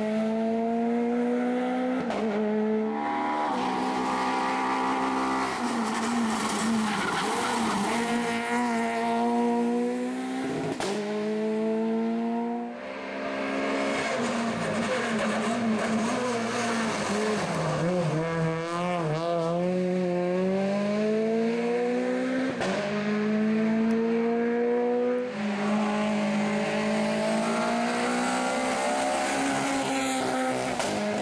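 Peugeot 208 VTi R2 rally car's 1.6-litre four-cylinder engine revving hard through the gears, its pitch climbing and then dropping sharply at each shift or lift, several times over.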